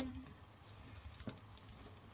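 Faint rustling and light ticks of stiff New Zealand flax (Phormium tenax) strips being slid over and under one another by hand while weaving, with one small click a little after a second in.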